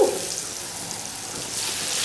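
Fish deep-frying in a wok of hot oil: a steady sizzle that grows louder about one and a half seconds in, as the fish goes into the oil.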